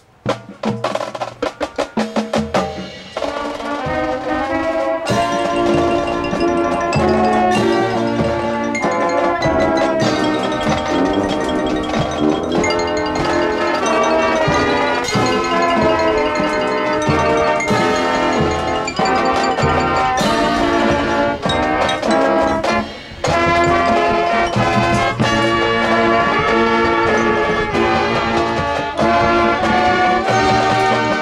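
High school marching band playing the opening of its field show, with brass and front-ensemble mallet percussion. It starts with a run of sharp percussion hits over the first couple of seconds before the full band comes in, and drops briefly about 23 seconds in.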